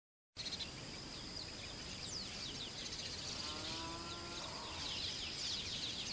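Faint outdoor ambience of small birds chirping in quick, falling notes over a steady high-pitched whine. One longer, lower call comes a little past the middle.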